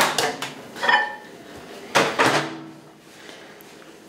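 Microwave oven door being opened and a dish of microwave-thawed mango handled: a few sharp clicks and knocks, the loudest about two seconds in.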